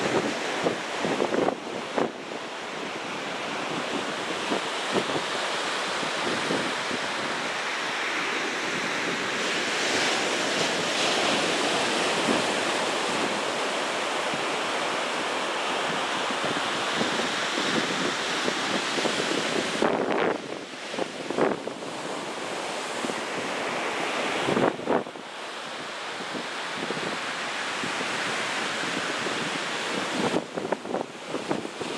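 Pacific surf breaking and washing up a beach as a continuous rushing wash that swells and eases with the waves, with wind buffeting the microphone.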